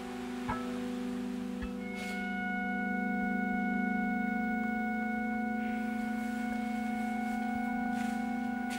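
Background music: a slow, sustained chord of held tones, with higher notes joining about two seconds in as it swells slightly.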